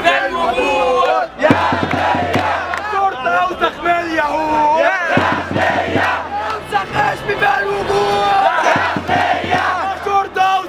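A large crowd of protesters chanting a slogan in unison in Arabic, the chanted phrase repeating about every three and a half seconds.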